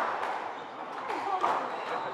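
Squash rally on a glass court: a few faint, short knocks of the ball off the racket and the walls.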